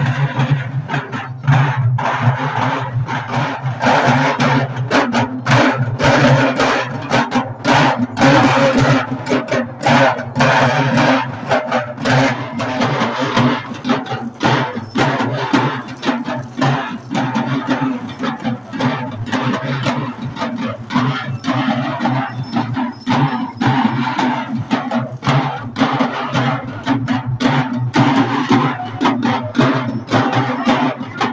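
A group of two-headed barrel drums beaten together in a procession, a fast, dense rhythm of strokes, over a steady low hum.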